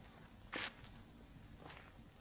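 Footsteps at a slow, uneven pace: two steps, the first, about half a second in, clearer than the second, near the end.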